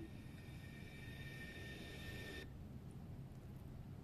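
Faint hiss with a few steady high whining tones, the edited clip's audio playing back through a phone's loudspeaker, cutting off suddenly about two and a half seconds in; after that only a low hum.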